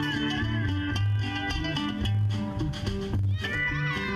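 Live country band playing: fiddle, acoustic guitar, drum kit and pedal steel guitar over a walking low bass line. About three and a half seconds in, a run of high notes slides up in pitch.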